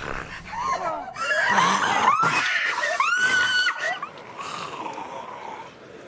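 A person screaming and crying out in distress during a struggle, the cries wavering up and down, with a long high scream about three seconds in; the voice dies away after about four seconds.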